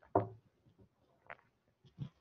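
Two brief knock-like sounds: a sharper, louder one just after the start that dies away quickly, and a fainter, shorter one about a second later.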